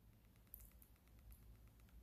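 Near silence: room tone with a faint, quick, even ticking and a few soft clicks.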